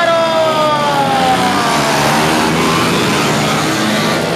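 A pack of racing dirt motorcycles accelerating away from a race start, their engines running together under hard throttle; one loud engine note slides slowly down in pitch over the first two seconds as the bikes pull away.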